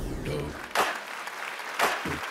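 Studio audience applauding and cheering, with a sharp hit about once a second.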